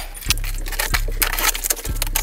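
Cardboard box and packaging handled during an unboxing: continuous rustling, crinkling and quick scraping and tapping sounds.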